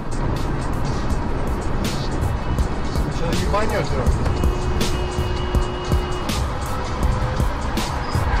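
Steady road and engine noise inside a car driving at motorway speed, with music and voices over it.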